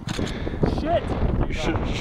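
A 115 lb barbell dropped from a snatch lands on grass with one dull thud at the start, over steady wind rumble on the microphone, with brief low voice sounds in the middle.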